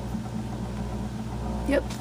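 Steady low mechanical hum, with a short spoken word near the end.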